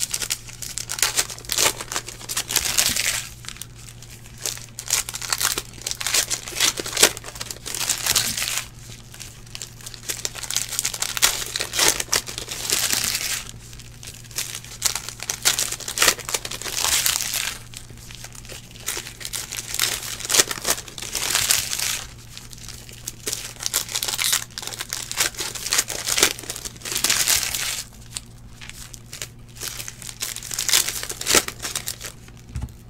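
Foil trading-card pack wrappers crinkled and torn open by hand, in irregular bursts of crinkling a second or two long with short quieter gaps between them.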